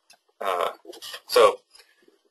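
Speech only: a person's voice in two short utterances, about half a second and about a second and a half in, with quiet between them.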